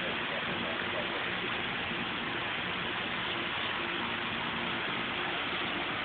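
Steady, even background noise with faint voices under it; no sudden sounds.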